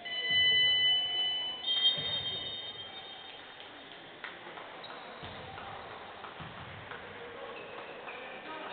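Referee's whistle blown in two long shrill blasts, the second a little higher in pitch, stopping play. Faint court noise follows.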